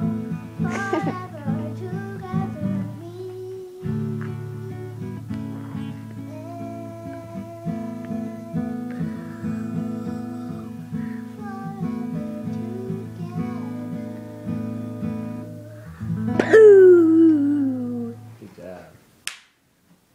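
Guitar-like music with steady held chords, and a child's voice singing over it. About 16 s in, a loud sung note slides down in one long fall, and the music then fades.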